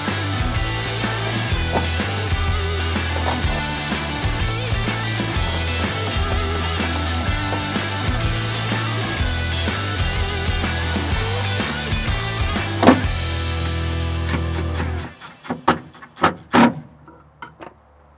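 Background music with a steady bass line, which stops about three-quarters of the way through. After it stops, a handful of sharp clicks and knocks are left.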